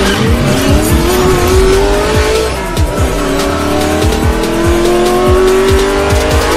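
A race-car engine revving up in two long rising sweeps, laid over hip-hop music with a steady beat.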